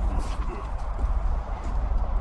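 Wind and handling rumble on a handheld microphone, with a clatter as a metal gate is pushed open near the start, then footsteps on concrete.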